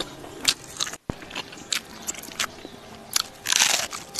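Close-miked eating: scattered sharp crunches of chewing, then a longer, loud crisp crunch near the end as a raw leaf of cabbage is bitten into. The sound cuts out briefly about a second in.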